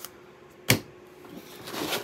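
Unpacking handling noise: a single sharp tap just under a second in, then a soft rustle building near the end as a foam packing insert is gripped and lifted out of a cardboard box.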